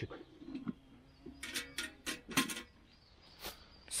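Metal camping pot being handled, a handful of short sharp clinks and knocks of lid and wire bail handle, bunched between one and two and a half seconds in, with one more near the end.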